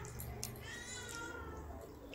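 A cat meowing once, a drawn-out meow that rises and then falls in pitch, starting about half a second in; a short click comes just before it.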